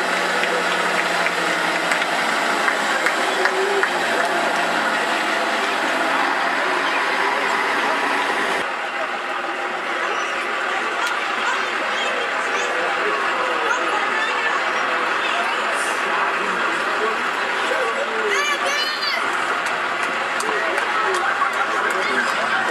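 Heavy lorry engine running as a fairground transport lorry comes down the road and passes close by, under continuous crowd chatter.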